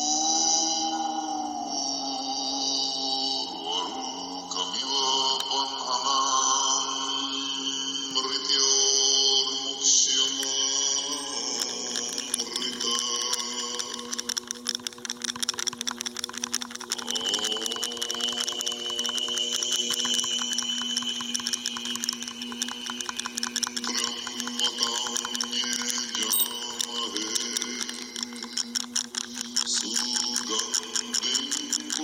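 Chanted mantra music: low sustained voices over a drone, a new chanted note scooping upward at the start and again about halfway through.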